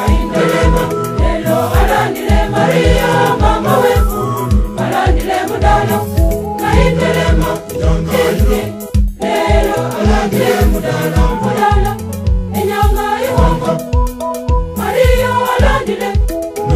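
A church choir singing a gospel song to Mary, many voices together over a steady beat with strong low pulses.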